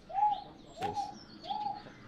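Wonga pigeon calling: a steady series of identical single coos, about one every two thirds of a second.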